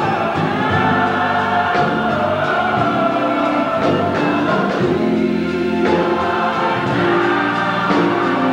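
Gospel choir singing in full voice, holding long chords.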